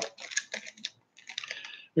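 Clear plastic packaging being handled, giving light crinkles and small clicks with a short pause a little past halfway.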